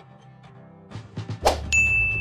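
Video-editing sound effects: a sudden swish-like hit about one and a half seconds in, then a bright ding that starts just after and rings on steadily, over quiet background music.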